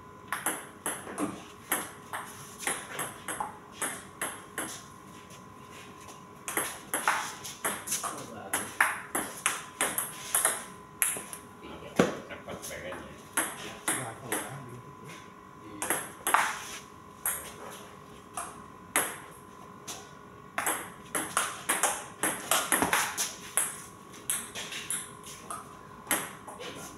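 Table tennis ball clicking quickly back and forth off the paddles and the table in rallies, several points with short pauses between them.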